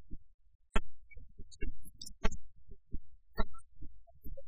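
Pipa notes plucked one at a time in an instrumental passage between sung lines, sharp separate attacks about every half second.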